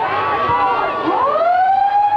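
Football ground siren winding up about a second in, rising in pitch and settling into a steady held tone: the siren that ends a quarter of an Australian rules football match.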